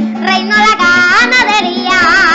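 A boy singing a Venezuelan folk song with instrumental backing, his voice holding and bending long notes.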